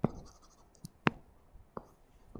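Stylus tip tapping on a tablet screen while a word is handwritten: a few sharp taps, the loudest at the start and about a second in.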